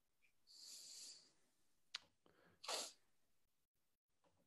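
Near silence on a video-call line, broken by a faint hiss about half a second in, a single click near the middle and a short breathy noise shortly after.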